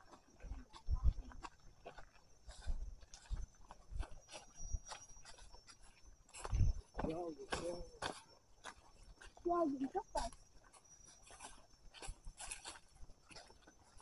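Footsteps crunching and rustling on dry fallen bamboo leaves along a dirt trail, in an uneven walking rhythm, with two brief faint voices about halfway through.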